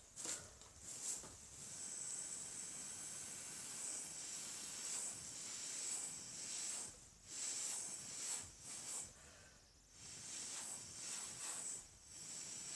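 Air blown through a straw onto wet acrylic pour paint: a steady hiss in long puffs, broken by short pauses for breath about seven and ten seconds in.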